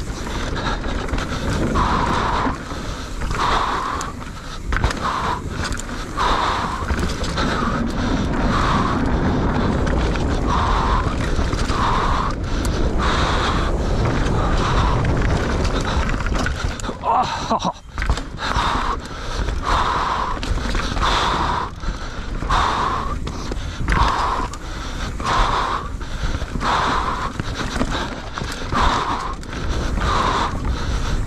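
Mountain bike riding fast down a dirt forest trail: steady rumble and rattle of knobby tyres and frame over the ground, with the rider breathing hard in a regular rhythm, about one breath a second, from race effort.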